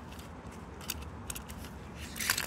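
A few short, sharp clicks and rustles from the camera being moved through leaves next to the plastic toy track, over a low steady rumble.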